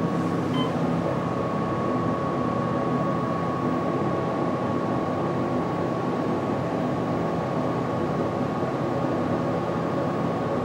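Otis hydraulic elevator car descending smoothly: a steady low hum and ride noise with a thin high whine, and a brief faint beep about half a second in.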